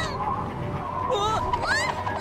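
Cartoon character's wordless honking calls, a few quick rising and falling pitch glides starting about a second in, over steady held background tones.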